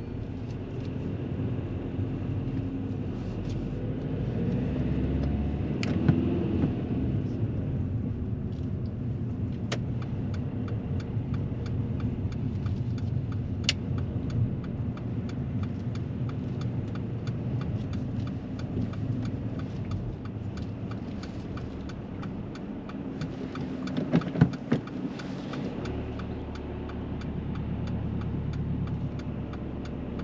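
Car engine and tyre noise heard from inside the cabin of a manual car driving at low speed on a residential road. The engine note rises and falls about six seconds in. A steady ticking, typical of a turn indicator, runs through much of the middle.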